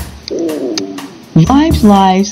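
Start of a radio station promo: a short low wavering pitched sound in the first second, then a voice coming in loudly about one and a half seconds in.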